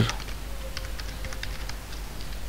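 Computer keyboard keys clicking in an irregular run of keystrokes as a word is typed.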